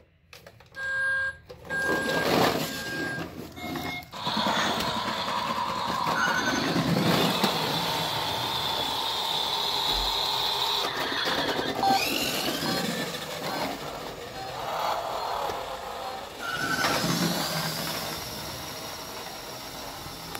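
Battery-powered toy car's electronic sound effects: a few short beeps about a second in, then a long run of engine-like noise with a steady high whine, dipping a couple of times and fading near the end.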